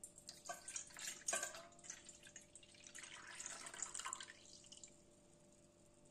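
Whey being poured into a stainless steel bowl, faint: a few sharp splashes in the first second and a half, then a steadier pouring that swells and tails off about five seconds in.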